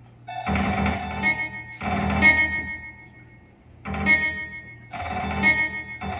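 Electronic keyboard synthesizer, improvised: four loud, dense, ringing chord clusters of about a second each, over a softer held tone that sustains between them.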